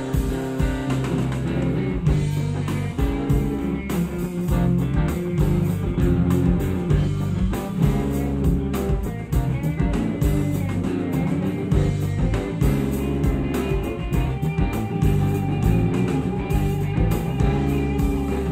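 Rock band playing live, with electric guitars, bass, drum kit and hand percussion, in an instrumental passage without vocals.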